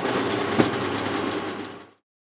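Konica Minolta bizhub colour multifunction copier running as it prints a configuration page: a steady mechanical whirr of the print engine and paper feed, with a click about half a second in. It fades out near the end.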